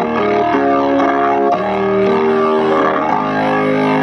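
Keyboard playing sustained, organ-like chords that change every second or so, an instrumental passage in a gospel song accompaniment.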